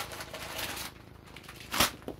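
Crumpled blue painter's tape rustling as it is handled and thrown, followed near the end by a single sharp tap.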